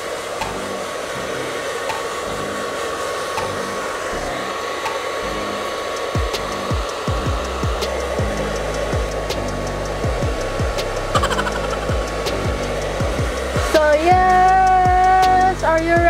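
Handheld hair dryer blowing steadily with a high whine while wet hair is dried. Background music plays along: a low beat comes in about six seconds in, and a held melody enters near the end.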